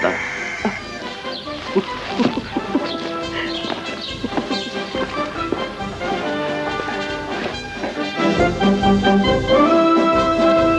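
Military brass band music, with held notes throughout, swelling louder about eight seconds in. A short laugh near the end.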